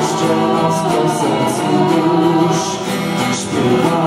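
A small mixed vocal ensemble of teenagers singing a song in several voices, accompanied by acoustic guitar.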